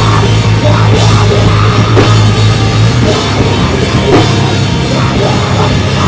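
A metalcore band playing live and loud with no vocals: electric bass and electric guitar riffing over a drum kit with cymbals. A low bass note is held for about three seconds before the riff changes.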